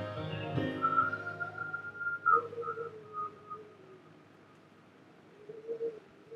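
Keyboard music playing softly as a chord rings out, followed by a thin, high, wavering sustained note over a lower note that slides gently down. It fades to very quiet after about four seconds, then swells briefly near the end.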